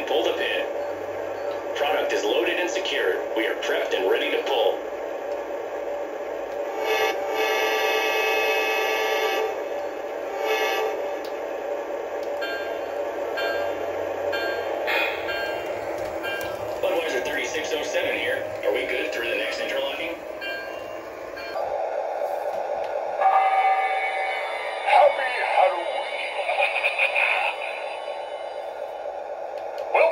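A Lionel O gauge diesel locomotive's onboard sound system playing a steady diesel engine drone, with radio-style crew chatter at times. The horn sounds about seven seconds in, one long blast and then a short one.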